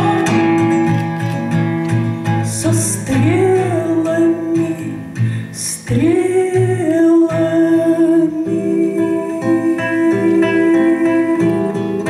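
A woman singing long held notes that slide up into pitch, to plucked acoustic guitar. The voice stops about eight seconds in and the guitar plays on alone.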